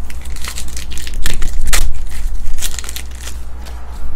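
Wrapper of a Topps Star Wars trading-card pack crinkled and torn open by hand, a quick run of crinkles and rips that is loudest in the middle and eases off near the end.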